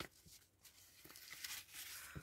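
Faint rustling of paper memo-pad sheets being leafed through by hand, a little louder in the second half.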